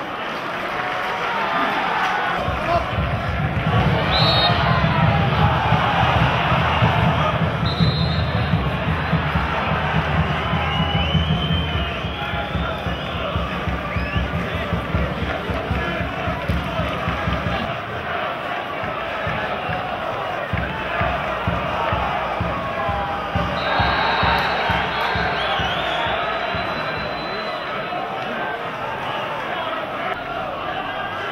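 Football stadium crowd noise: supporters singing and chanting, with a rapid low thumping underneath. A few high whistles cut through, a longer one about three-quarters of the way in.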